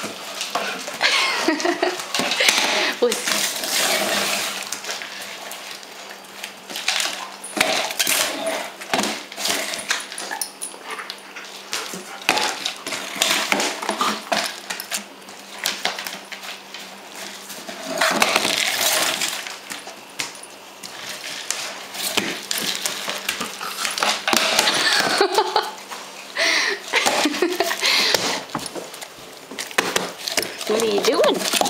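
A German Shepherd playing with a cardboard tube treat toy: many irregular knocks, scrapes and rattles as the dog noses, paws and bites the tube across the floor, with louder stretches of activity at times.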